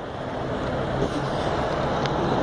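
Road traffic: the rushing tyre and engine noise of a passing vehicle, growing steadily louder.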